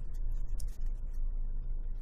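Windage adjustment knob on a Magpul MBUS Pro rear backup sight being turned by hand: a quick run of small, irregularly spaced positive detent clicks.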